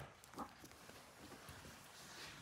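Near silence: room tone with one faint, short handling sound about half a second in, as a paperback book is moved by hand.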